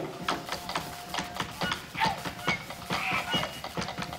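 Live traditional music for a Toraja dance, in a quieter passage between loud drum strokes: one long held note with light scattered taps and a few short high notes.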